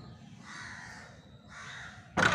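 A crow cawing twice, a longer harsh call about half a second in and a shorter one near the end.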